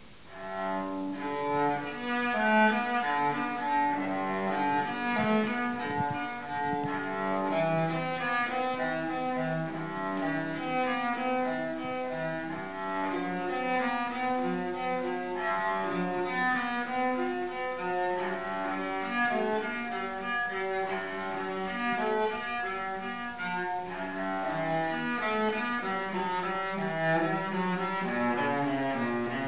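Solo cello played with the bow, starting just after the beginning: a melody of held notes moving from one pitch to the next.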